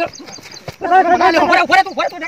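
Men yelling and wailing in loud, repeated cries, with one long drawn-out cry from about a second in.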